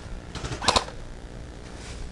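Airsoft gunfire: a short cluster of sharp clicks, loudest a little under a second in.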